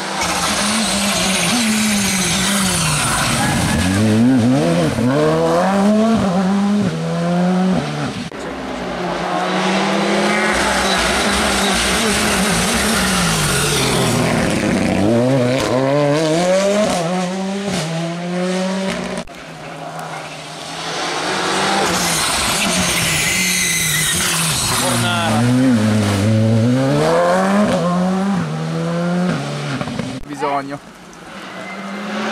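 Rally car engines revving hard, the pitch climbing and dropping with each gear change, as cars come past one after another on a wet tarmac stage. One of them is a Ford Fiesta rally car. There are about three loud passes, with short lulls between them.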